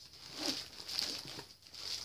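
Plastic wrapping around a large stack of paper plates crinkling softly as the pack is handled and turned over, in two short spells.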